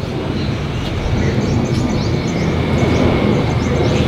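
Steady wind noise rumbling on the microphone in an open garden, with faint high bird chirps repeating above it.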